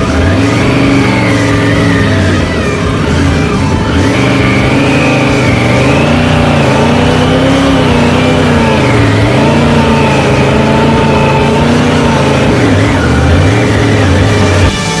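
Triumph Tiger adventure motorcycle's three-cylinder engine pulling in first gear through deep sand, its revs rising and falling again and again as the rider works the throttle.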